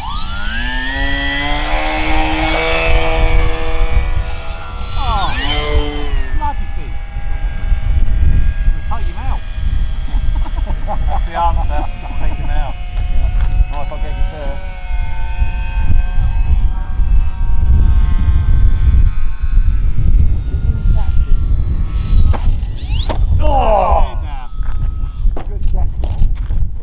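Motors of radio-controlled model aeroplanes whining in flight, one throttling up in a rising whine as it is launched, several tones overlapping at once. Wind rumbles heavily on the microphone throughout.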